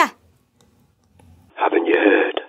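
Over a telephone line, a short rush of noise with a few clicks about one and a half seconds in, after a near-silent pause.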